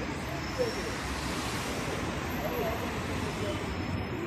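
Busy city street ambience: a steady wash of traffic noise with faint voices of passers-by mixed in.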